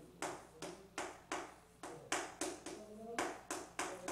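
Chalk writing on a chalkboard: a quick run of sharp taps and short scrapes as the chalk strikes and drags across the board, about three strokes a second.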